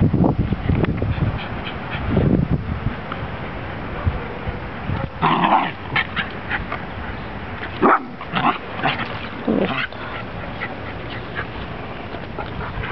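Dog barking: a run of short, sharp barks in bursts from about five to ten seconds in.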